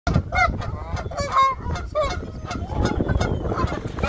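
Canada geese honking, a rapid series of short calls one after another.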